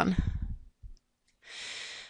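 A woman's voice trailing off at the end of a word, a pause of about a second, then a soft breath in near the end just before speech resumes.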